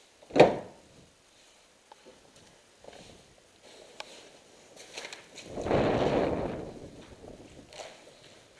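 Footsteps on a debris-strewn floor. A single sharp bang about half a second in is the loudest sound, followed by faint scattered clicks. About five and a half seconds in comes a longer scuffing, rustling noise lasting a second or so.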